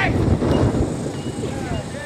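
Wind buffeting the camera microphone, a heavy low rumble strongest in the first second, with faint voices of nearby spectators.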